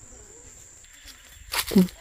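Faint, steady, high-pitched insect whine over a quiet rural background. A voice starts speaking near the end.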